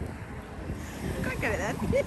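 Wind buffeting the microphone, with a brief wavering vocal sound about a second and a half in.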